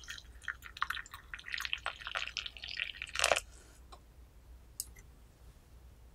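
Water poured in a thin stream into a small Yixing zisha clay teapot over loose puer leaves, splashing and trickling as it fills. The pour is loudest just past three seconds, then dies away to quiet.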